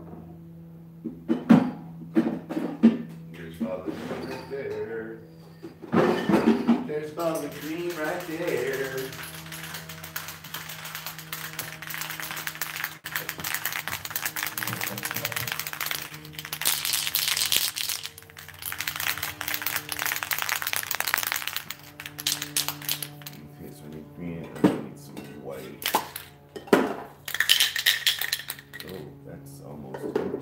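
Spray paint cans hissing in long bursts through the middle of the stretch and again near the end, with several sharp knocks of cans and tools being handled, over steady background music.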